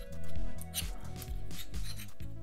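Background music, with the scrape and rub of a metal adapter bracket being slid along the microscope's aluminium column, loudest about a third of a second in. The bracket binds because the column is incorrectly machined, wider in places.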